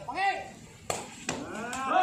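Players' short shouted calls, with a single sharp smack of a sepak takraw ball being kicked about a second in.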